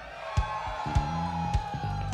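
A live band playing a quiet vamp, with a held note sliding slightly down over low bass notes, while the crowd cheers and whoops.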